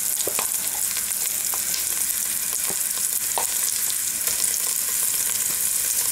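Mole paste frying in hot oil in a saucepan: a steady sizzle with scattered small pops and clicks.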